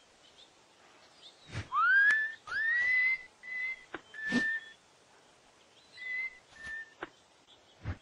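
Casual whistling in a cartoon soundtrack: a string of short whistled notes, each sliding up and then held, the first and loudest about two seconds in. A few soft thumps fall among them, the last near the end.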